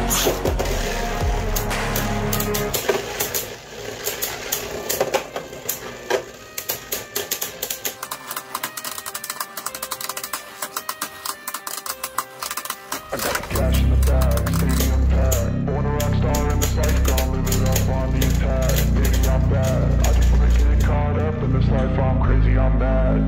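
Background music, its bass falling away for about ten seconds while rapid sharp clicks and clacks of Beyblade Burst spinning tops striking each other in a plastic stadium come through. The full bass-heavy music comes back a little past halfway.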